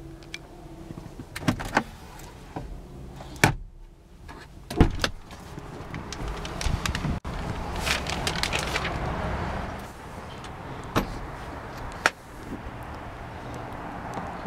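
Handling noises inside a parked car's cabin: a few sharp clicks and knocks, with a rustling stretch in the middle.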